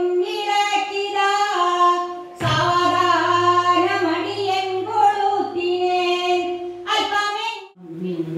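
An elderly woman singing solo into a microphone, in long held, drawn-out notes, with a short break for breath about two seconds in and a stop just before the end.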